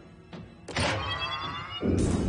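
Cartoon soundtrack of dramatic music and sound effects: a few soft knocks, then a sharp metallic hit with a ringing tone that slides down in pitch, and a heavy low impact with a rumble near the end.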